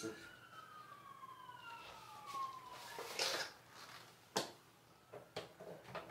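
A faint siren wailing, its pitch sliding mostly downward over the first three seconds. Then come a few short sharp knocks and rustles as electric guitars are handled.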